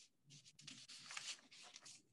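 Faint scratchy rustling in a run of short scrapes, like handling noise or paper rubbing near a microphone.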